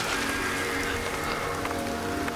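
Heavy rain pouring down, with background music of long, steady held tones over it.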